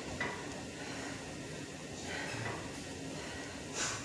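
About three short, sharp hissing breaths, near the start, in the middle and just before the end, typical of a boxer exhaling with each punch during close-range sparring. A low steady hum runs underneath.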